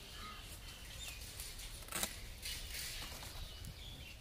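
Taro leaves being picked by hand: leaves and stalks rustling, with one sharp snap about halfway through as a stalk is cut or broken. Birds chirp faintly.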